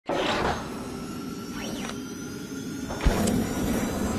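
Logo-animation sound effects: a whoosh at the start, a thin tone sweeping up and back down near the middle, and a low thump about three seconds in.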